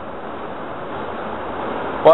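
A steady, even rushing noise with no voice in it, growing slowly louder.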